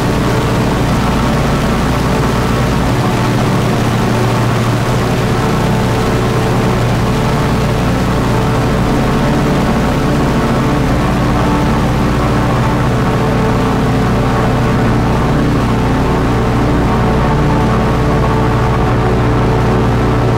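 Dark ambient drone music: a loud, steady, low drone of layered sustained tones over a hiss, with no beat.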